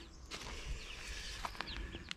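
Quiet outdoor background with faint small-bird chirps and a few soft clicks and rustles.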